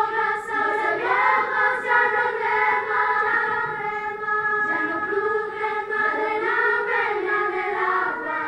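Children's choir singing a melody of long, held notes.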